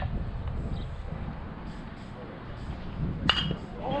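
Metal baseball bat hitting a pitched ball once, about three seconds in: a sharp metallic ping with a brief ring.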